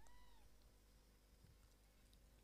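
Near silence, with one faint, brief call at the very start that rises and falls in pitch.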